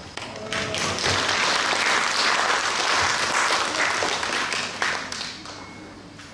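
Audience applauding. The clapping builds within the first second and fades away about five seconds in.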